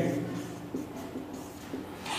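Marker pen writing on a whiteboard, a faint scratching as a short phrase is written out.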